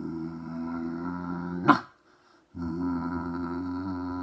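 A man imitating a dog: a long, steady growl that ends in a sharp rising yelp, then after a short pause a second growl.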